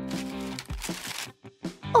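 Background music with steady tones, over paper rustling as a folded note is handled and opened, loudest about half a second to a second in.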